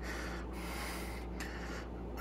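Soft breathing close to the microphone, a faint hiss over a low steady hum.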